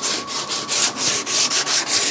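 Live edge of a wooden tabletop being hand-sanded with a pad, in quick back-and-forth strokes, about three to four a second, to take off splinters.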